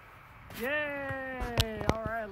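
A person's long, drawn-out vocal sound, held for about a second and a half and sinking slightly in pitch, with two sharp clicks near the end.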